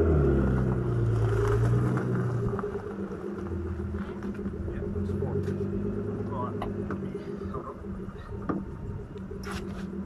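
Nissan Laurel C33's RB20DET turbo straight-six running at low revs. It is louder for the first two seconds or so, then drops to a quieter idle. A couple of sharp clicks come near the end.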